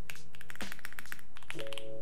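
Typing on a computer keyboard: a quick run of keystrokes through the first second or so, with soft background music underneath.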